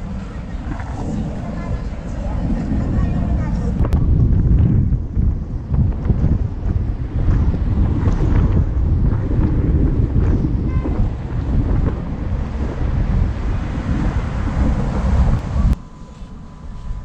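Wind buffeting the microphone of a moving handheld camera: low, gusty noise that comes and goes unevenly and cuts off suddenly just before the end.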